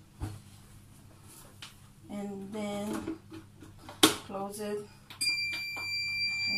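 A sharp click about four seconds in, then a steady, high-pitched electronic beep from a kitchen appliance that starts about a second before the end and holds on.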